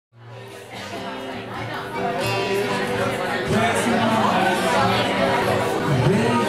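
Acoustic guitar playing the opening of a song, fading in from silence, with bar-room crowd chatter underneath.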